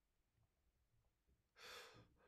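Near silence, then, about one and a half seconds in, a man draws a short, audible breath through his open mouth.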